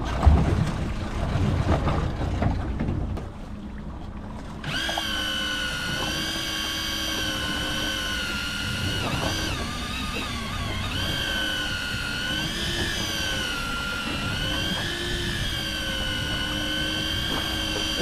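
Electric deep-drop fishing reel's motor starting about five seconds in with a sudden whine. It runs on steadily, its pitch wavering slightly as it winds a fish up under load. The owner thinks the reel may be on its last leg. Before it starts there is wind and water noise.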